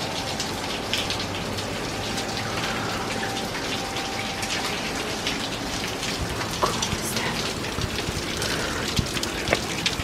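Spray from Staubbach Falls raining down: a steady hiss of falling water with scattered sharp taps of drops landing close by, more frequent near the end.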